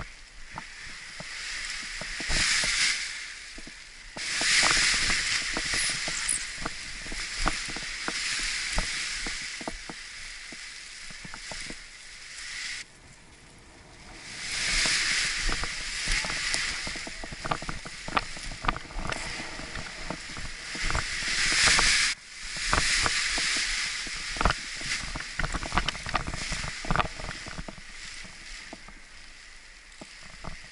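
Wind rushing over the camera microphone in surges that swell and then cut off sharply twice, with scattered crackles and rustles from the Edel Power Atlas paraglider wing and its lines being kited overhead.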